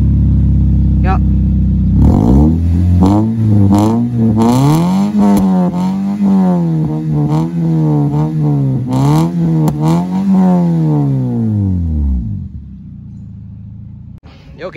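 Toyota Vios 1.5-litre VVT-i four-cylinder engine running through an aftermarket dual-muffler racing exhaust. It runs steadily at first, then is revved up and down repeatedly for about ten seconds, and drops back to a steady idle near the end.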